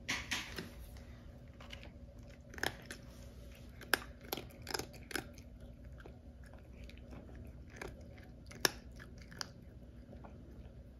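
Cat crunching dry kibble: irregular short crunches, a cluster right at the start, several more about three to five seconds in, and a few near the end.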